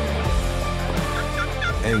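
Wooden turkey box call worked by hand, giving a run of short yelps about four a second that starts about a second in, over background music.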